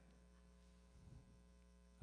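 Near silence with a steady low electrical mains hum, and one faint short sound just after a second in.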